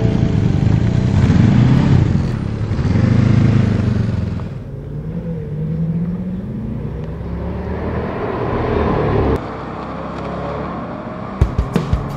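Road vehicles passing: engine and road noise swelling and fading twice, then an engine's pitch rising and falling, cut off abruptly about nine seconds in. A drumbeat starts near the end.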